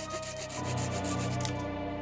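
A hand saw cutting small conifer branches with quick, even back-and-forth strokes that stop near the end, over background music.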